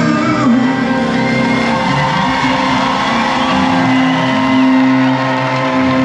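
Live band music from the stage of a large theatre: a piano-led pop-rock song with guitar and a sung line near the start. Notes are held steadily through the rest.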